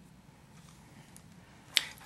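Quiet room tone with a faint low hum, broken near the end by one sharp click just before speech begins.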